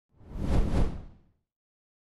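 A single whoosh sound effect for the title card, swelling up and fading away within about a second, with a strong low rumble beneath it.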